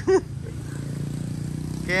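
A vehicle engine idling with a steady low hum.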